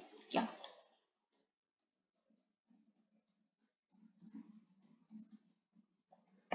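Faint, light clicks, about a dozen at irregular intervals, made while strokes are drawn on a computer whiteboard: a resistor label and a voltage-source symbol are being hand-drawn.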